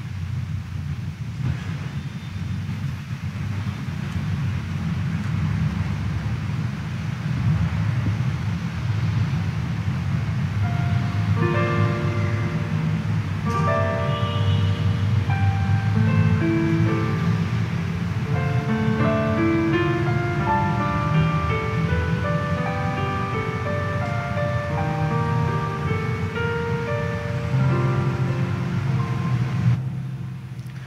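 A steady low rumble of room noise, then a keyboard instrument comes in about eleven seconds in, playing the held-note instrumental introduction to a communion hymn.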